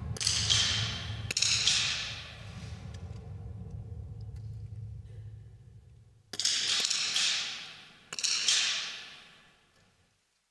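Four .22 smallbore target rifle shots, each a sharp crack with a ringing tail of about a second in the hall: two in the first second and a half, then two more after about six seconds. A low steady hum lies under the first half.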